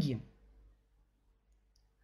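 A woman's voice trailing off in the first moment, then near silence over a video-call line.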